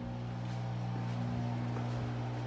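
Steady low hum from a household machine, made of several constant low tones that do not change.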